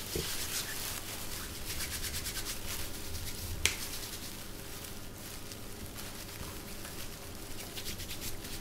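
Hands being rubbed together with alcohol hand gel: a faint rubbing with many small ticks, and one sharp click about three and a half seconds in.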